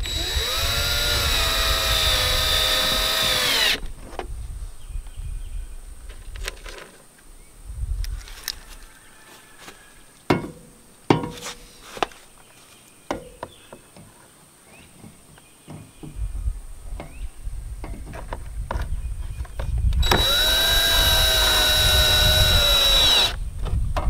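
Porter-Cable 20V cordless drill driving screws into a plastic tail light lens: a run of a few seconds at the start and another near the end, the motor whine rising as it spins up. In between come scattered clicks and taps of screws and hands on the lens housing.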